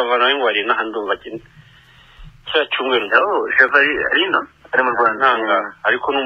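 Speech only: a person talking with the top end cut off, as over a radio, with a pause of about a second about a second and a half in.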